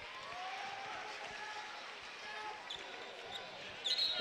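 Basketball arena ambience during live play: a steady crowd murmur with scattered faint voices and the sounds of play on the hardwood court.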